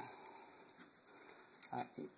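Faint, light clicks of an ATV brake caliper being handled in gloved hands, over low room noise. A short spoken word near the end.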